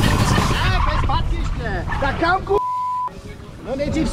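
People talking as background music fades out, then a single steady high beep of about half a second with all other sound cut out beneath it, typical of a censor bleep over a word.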